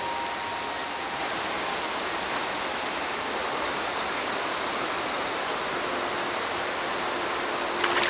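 Steady sound of a shallow river's water running over stones.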